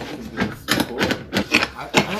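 A door being unlatched and pushed open: a quick run of irregular clicks and knocks from the latch and handle.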